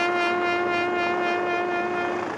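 Trumpet holding one long, steady low note that fades slightly near the end, played as a solo memorial call.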